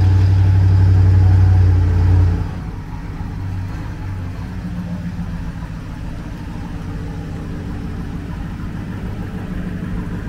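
Ford F-150 pickup engine just after starting, running loud for about two seconds, then settling to a quieter steady idle as the truck reverses slowly out of the garage.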